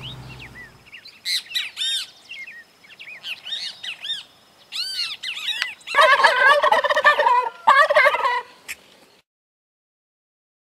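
Small birds chirping in short high calls, then a domestic turkey tom gobbling, the loudest sound, for about two and a half seconds; the sound cuts off suddenly about a second later.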